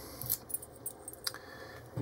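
Keys on a small ring clinking faintly as the key is worked in a brass Cocraft 400 padlock, with a few light metallic clicks.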